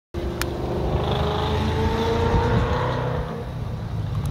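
A motor vehicle's engine running over a low rumble, its pitch rising slowly as it accelerates, then fading near the end. A short click sounds just after the start.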